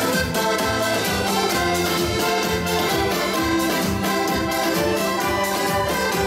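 Live accordion dance music with a steady beat, the accordion carrying sustained melody notes.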